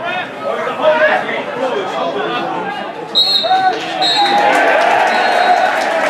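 Referee's whistle blown three times for full time: two short blasts about three seconds in, then a third, longer one. A crowd cheers and its noise swells as the whistle goes, over shouting voices.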